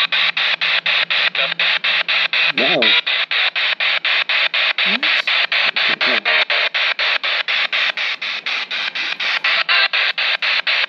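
ITC Research spirit box sweeping up the FM band. It gives a steady rush of radio static chopped about four times a second as it jumps from station to station. Brief snatches of broadcast voices come through about three seconds in and again around five to six seconds.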